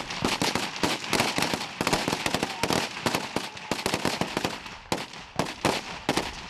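Several Kalashnikov-type assault rifles firing rapid, irregular single shots and short bursts, the shots overlapping almost without a break, with a brief lull about five seconds in.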